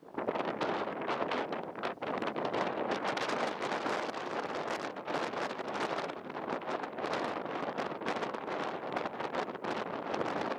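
Wind blowing across the camera microphone: a steady rushing noise that rises and falls.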